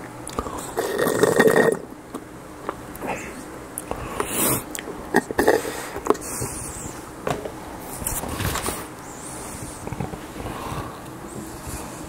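Close-miked drinking of juice from a plastic cup: swallowing and mouth sounds, with a louder throaty, burp-like sound lasting about a second near the start. Then sipping through a straw, among scattered short clicks and handling noises.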